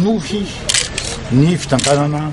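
A man speaking, with a camera shutter clicking about two-thirds of a second in.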